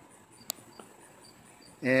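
Insects chirping softly in a quick, evenly repeated high pulse, with one sharp click about a quarter of the way through.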